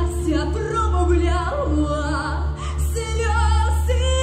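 Teenage girl singing pop vocals into a handheld microphone, her voice wavering with vibrato on held notes, over a backing track with a steady deep bass.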